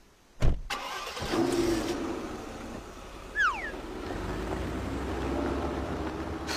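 A thump, then a Mercedes sedan's engine starting and settling into a low, steady running hum. A short falling whistle-like chirp sounds about halfway through.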